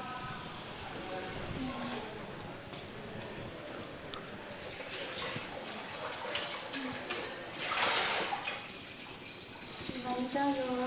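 Washing up at a kitchen sink: water trickling from the tap, a dish clinking about four seconds in, and a short rush of water around eight seconds in, under faint low voices.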